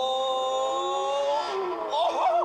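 Porsche GT3 RS flat-six engine revving up under acceleration, its pitch climbing steadily, then falling suddenly about one and a half seconds in and running on lower. It is played back from a YouTube video through a laptop's speakers.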